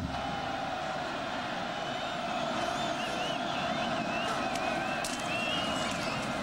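Steady roar of a large stadium crowd during a football play, with a few high wavering whistles over it in the second half.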